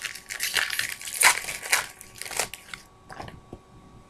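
Crinkling and rustling of a 2013 Topps Chrome baseball card pack being handled, the foil wrapper and cards scraping, for about the first two and a half seconds, then a few light ticks.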